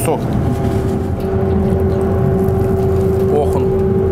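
A steady mechanical hum with one constant mid-pitched tone over a low rumble; the tone becomes clearer about a second in.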